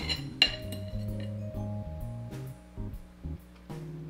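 A metal fork and knife clink twice against a dinner plate right at the start, two sharp ringing strikes about half a second apart, over background music with steady low notes.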